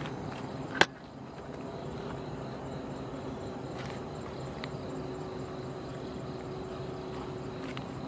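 Steady wind rushing through the trees, with a single sharp click a little under a second in.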